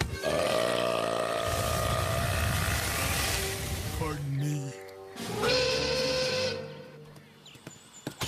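Wordless vocal sounds from a cartoon dinosaur character: one long drawn-out cry lasting about four seconds, then a shorter held sound a little after the middle. Film score plays underneath.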